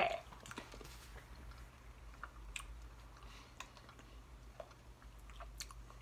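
Faint chewing of jelly beans, with scattered small wet clicks of the mouth, over a low steady hum.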